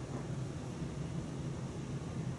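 Room tone: a steady low hum with an even hiss and no distinct events.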